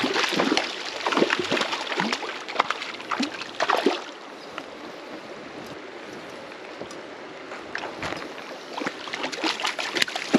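A hooked brown trout splashing at the surface of a shallow creek as it is played toward the bank, over the steady flow of the stream. The splashing comes in irregular bursts over the first few seconds, eases off for a few seconds to leave only the running water, then picks up again near the end.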